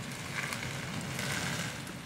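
Steady background noise with no distinct event, like outdoor ambience.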